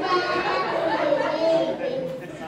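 Speech only: a three-year-old child talking into a microphone in a hall, with chatter behind.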